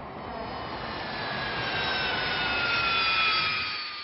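Boeing 747 turbofan jet engines: a rushing roar with a whine that slides steadily down in pitch. The sound swells, then eases off near the end.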